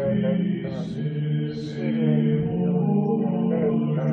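Background music: a voice chanting a mantra-like melody over a steady low drone.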